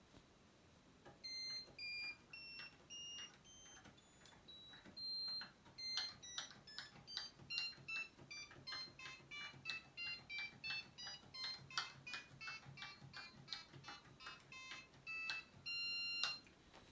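Electronic beep notes from a Commodore PET 2001's CB2 sound output through a piezo transducer, one note per key press. It starts with a slow run of notes stepping up in pitch, then from about six seconds in plays a faster tune of short notes, with a faint key click at each note.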